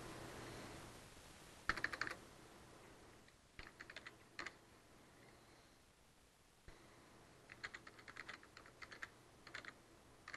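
Computer keyboard being typed on, faint, in short runs of keystrokes about two and four seconds in and a longer run near the end, with pauses between.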